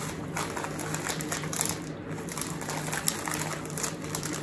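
Irregular faint crackles and crunches as a packet of crushed, seasoned dry ramen noodles is handled and the crunchy noodles are eaten.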